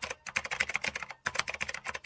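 Rapid keyboard typing clicks, about ten a second with a brief pause just after a second in: a typing sound effect timed to on-screen text being typed out letter by letter.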